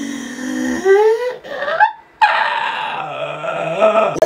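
A man's wordless vocalising: a drawn-out voice rising in pitch, cut off about two seconds in, then a rough, hissy vocal sound.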